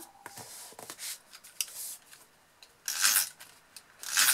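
Paper and cardstock being handled: pieces of patterned paper sliding and rustling against the card box and the work mat, with the loudest rustle about three seconds in.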